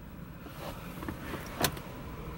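Low steady rumble of a car's cabin, with a faint rustle building and a short click about one and a half seconds in.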